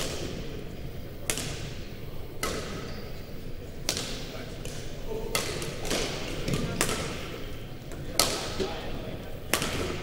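Badminton rally: rackets striking a shuttlecock back and forth, about eight sharp hits roughly a second and a half apart, each ringing briefly in the sports hall's echo.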